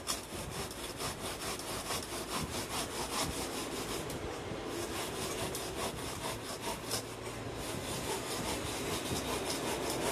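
Hand saw cutting through a fibrous refractory insulating board for a gas forge lining, in quick, even back-and-forth strokes that keep up without a break.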